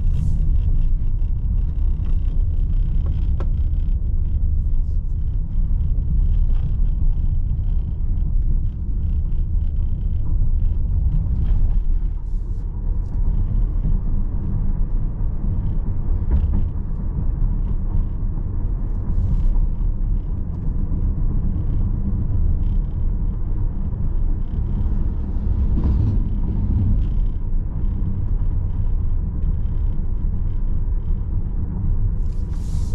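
Steady low road and tyre rumble inside the cabin of a 2023 Volkswagen ID. Buzz Cargo, a battery-electric van, driving at about 30 to 50 km/h on city streets, with no engine note.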